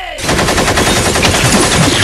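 Rapid automatic gunfire, a machine-gun sound effect, breaking in suddenly just after the start and firing continuously.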